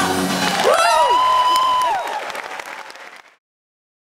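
Theatre audience applauding and cheering as a live band's song ends about half a second in, with a long high cheer rising over the applause. The applause fades away and cuts to silence just before the end.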